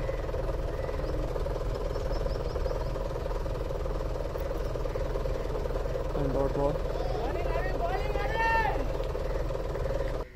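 Voices calling out across the cricket field, rising and falling, about six to nine seconds in. Underneath is a steady drone with a constant hum and low rumble.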